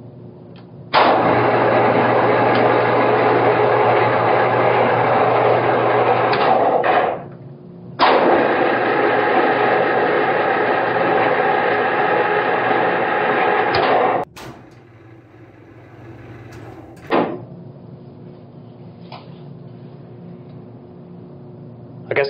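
Electric ammunition hoist winch on a battleship, its 440-volt motor running twice for about six seconds each with a steady whine, a second apart, the second run cutting off with a clunk. The original hoist is still in working order.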